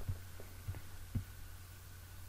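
Steady low electrical hum from the recording setup, with a few faint soft thumps about a second apart.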